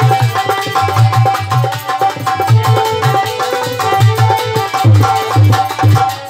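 Instrumental passage of a devotional bhajan: harmonium holding a melody over a steady beat of hand-drum strokes.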